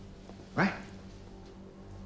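A man's short, scoffing vocal grunt about half a second in, over a low steady background hum.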